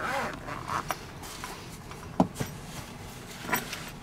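Handling of a padded fabric dagger bag and bubble wrap: soft rustling and scraping, with a small tick about a second in and a sharp knock about two seconds in.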